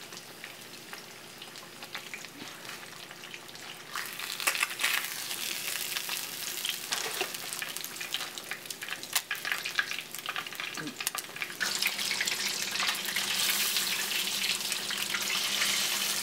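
Breaded swai fish pieces deep-frying in hot oil in a cast iron skillet: a steady crackling sizzle with many small pops. It grows louder about four seconds in and again near twelve seconds.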